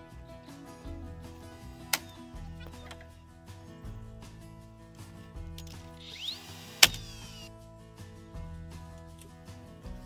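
Background music with a pulsing bass over timber-framing work. A cordless drill whirs briefly, driving a screw into a wooden noggin about six seconds in, just before a sharp knock, the loudest sound. There is another knock about two seconds in.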